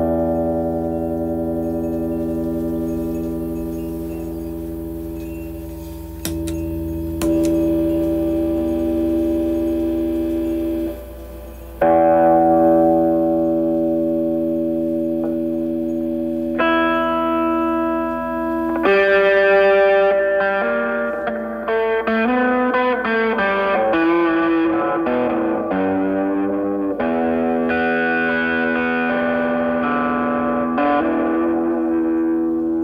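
Electric guitar, a Korean-made Epiphone Les Paul Classic, played through effect pedals into an old radio used as a guitar amp. Slow chords are each left to ring for several seconds, then quicker picked notes follow in the last third.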